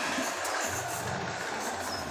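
Steady background noise: an even hiss with a low hum underneath, like a distant engine running.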